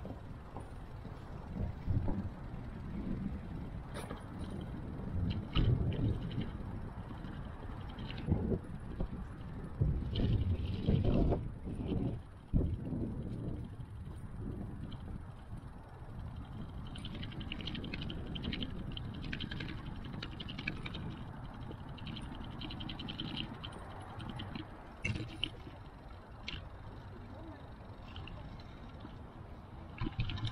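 Bicycle riding noise picked up by a bike-mounted action camera: a continuous low rumble with uneven swells and occasional sharp knocks and rattles.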